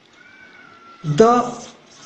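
Whiteboard marker squeaking on the board while a word is written: a faint, thin, slightly falling squeal for about the first second, followed by a man's voice saying "the".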